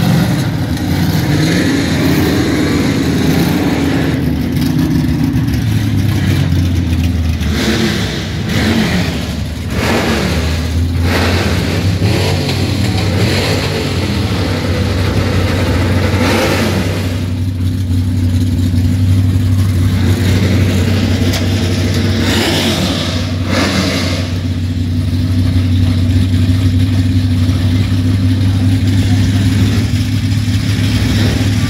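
Several muscle-car and drag-car engines idling and being revved, the pitch rising and falling in repeated revs over the first dozen seconds, then settling into a steadier idle broken by a few short, sharp revs.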